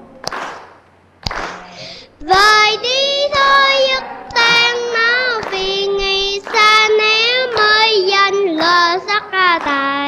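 A young child singing a Buddhist devotional song in Vietnamese, one clear voice in sustained melodic phrases that begin about two seconds in after a brief pause, with hands clapping along.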